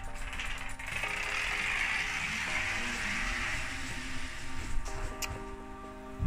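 Electric bicycle riding off, a hissing whir that swells about a second in and fades over the next few seconds as it moves away, with music playing in the background.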